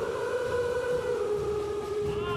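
A mass crowd of about 1,773 yodelers singing together, holding one long note in unison that sinks slightly in pitch.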